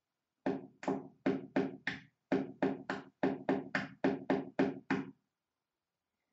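Knocking: about fifteen quick knocks on a hard surface in three runs of five, three and seven, with short pauses between the runs.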